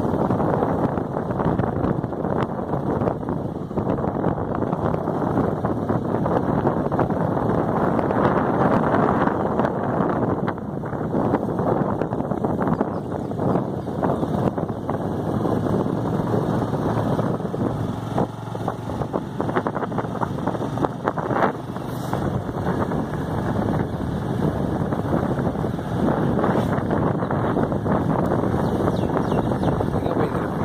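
Steady wind rush on the microphone of a moving motorcycle, with engine and road noise underneath.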